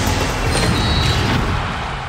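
Television sports-show transition sting: music layered with a deep rumble and sharp hit effects, easing off near the end.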